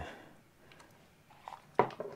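Faint clicks and rustles of hands handling a small plastic wireless video transmitter.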